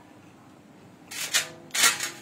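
Rustling of a dress in its plastic packaging being picked up and handled, two short rustles, the louder one near the end.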